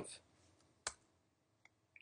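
A single sharp click from a computer keyboard or mouse a little under a second in, with a much fainter tick near the end; otherwise near silence.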